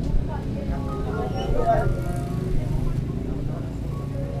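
Indistinct voices over a steady low rumble of a vehicle engine, with faint background music.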